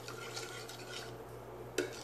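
Long ladle stirring a watery rice mixture in an aluminium pressure cooker: faint scraping and swishing against the pot, with one short knock near the end.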